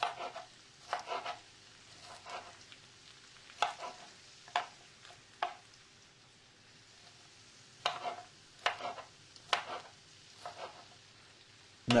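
Knife dicing a yellow bell pepper on a cutting board: irregular single cuts, each a sharp knock as the blade meets the board, with a pause of about two seconds in the middle.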